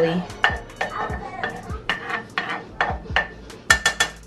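A spatula scraping and stirring garlic slices around a metal pot of melting butter, in regular strokes about three a second, the sharpest stroke near the end.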